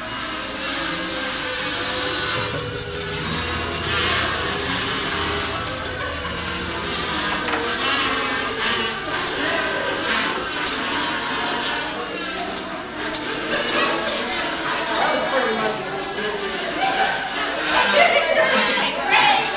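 A group of people playing plastic kazoos together, a buzzy hummed melody, over the steady shaking rattle of plastic maracas. It starts at once and keeps going throughout.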